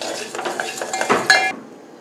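A steel spoon clinking and scraping against a metal pot as coriander and cumin seeds are stirred in it, with a short metallic ring about halfway through. The stirring stops with about half a second to go.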